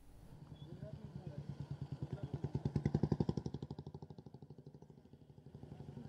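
A passing vehicle engine with a rapid, even throb that grows louder to a peak about three seconds in and then fades away, with faint voices underneath.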